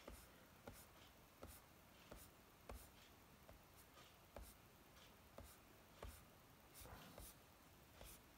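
Near silence broken by about a dozen faint, sharp clicks, irregularly spaced about half a second to a second apart, typical of a computer mouse being clicked and scrolled.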